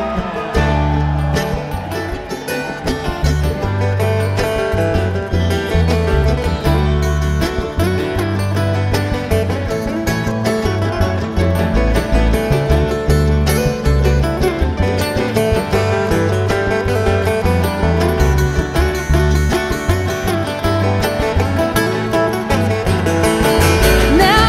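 Live bluegrass band playing an instrumental break: a quick acoustic guitar lead over strummed acoustic guitars, banjo and an upright bass stepping through the chords.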